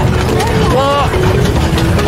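Steady low rumble of a vehicle's engine and tyres, heard from the open, tarp-covered back where the passengers ride. A voice calls out briefly near the middle.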